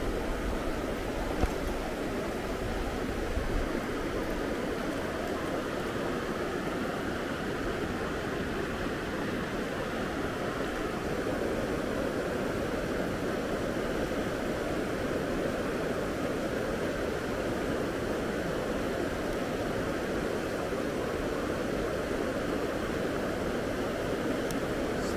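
Shallow mountain stream running steadily over stones in a riffle.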